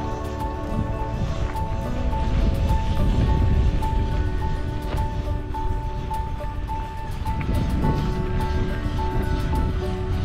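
Background music: a high note repeating about twice a second over held chords, with a low rumbling noise underneath.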